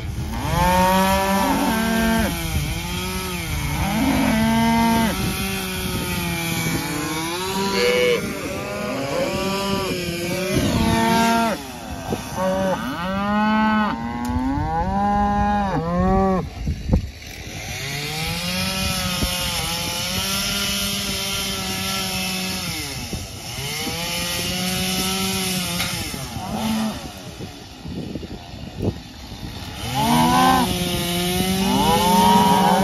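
Gas chainsaw running and revving up and down as it cuts through small tree trunks, with cattle mooing alongside.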